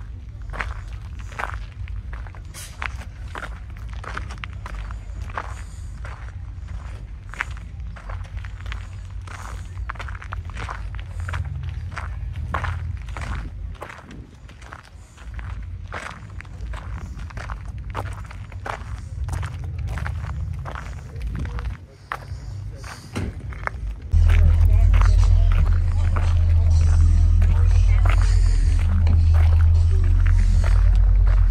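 Footsteps on pavement at a walking pace, about two a second, over a low steady rumble. About 24 seconds in, a much louder low rumble starts suddenly and holds.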